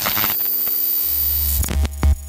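A short electronic logo sting: synthesizer tones over a noisy wash, with a deep bass note coming in about halfway.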